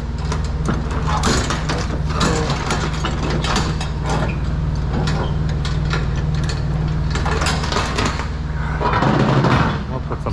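Steel tie-down chains clinking and rattling in short irregular clanks as they are handled against the trailer deck, over a steady low hum. A louder burst of noise comes near the end.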